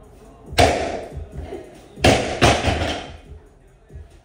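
Three heavy thuds of gym equipment hitting the floor, each ringing out briefly: one about half a second in, then two close together around two seconds in. Background music plays underneath.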